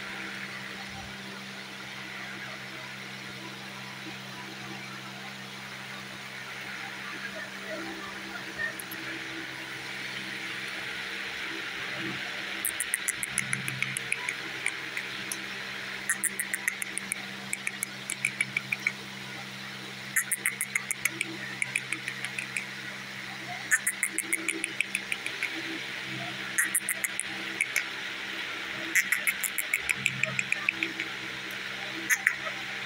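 Indian ringneck parakeet making rapid trains of sharp clicks, several a second, in short bursts that start about twelve seconds in and recur every few seconds, over a steady low hum.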